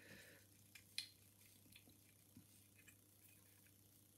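Near silence broken by a few faint, short clicks of a bent coat-hanger-wire pick and tension tool against a Legge five-lever lock's keyhole, the clearest about a second in.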